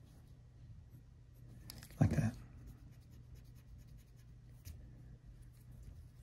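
Graphite pencil scratching faintly on paper in short sketching strokes while a face's nose is redrawn, with a brief murmured voice sound about two seconds in.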